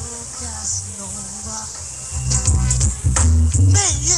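Digital dancehall riddim played through a sound system, with a vocal line over a heavy bass line. The bass thins out for the first couple of seconds and comes back in full about two seconds in.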